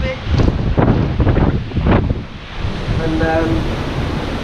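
Strong wind buffeting the microphone over a rough open sea, with the rush of waves and the ship's wake underneath. A short burst of voice comes in about three seconds in.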